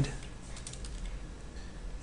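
Computer keyboard typing: a run of faint, quick, irregular key clicks.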